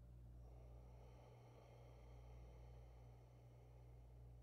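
Near silence: room tone with a steady low hum. A faint, long exhale starts about half a second in and lasts about three seconds, as a leg is extended in a breath-paced core exercise.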